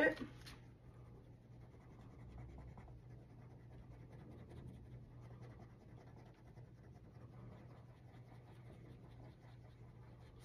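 Pencil scratching lightly and continuously on paper, shading in small squares of a printed chart, over a faint steady low hum.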